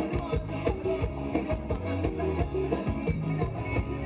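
Live band playing upbeat Thai ramwong dance music, with a steady drum beat and sustained bass notes.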